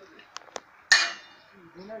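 A hammer striking a round metal disc laid on a metal block: two light taps, then one hard blow about a second in that rings briefly.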